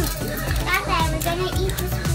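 Young children's voices, chattering and playing, over background music with a steady bass beat.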